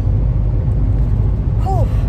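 Steady low rumble of a moving car, heard from inside the cabin, with a brief vocal sound near the end.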